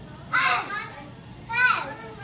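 A young child's voice giving two short, high-pitched calls, each falling in pitch, one about a third of a second in and one near the end, over the background hubbub of children playing.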